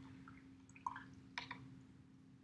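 Faint drips and light taps as a watercolor brush is rinsed in a plastic water cup: a couple of small sounds about a second in, then two quick taps.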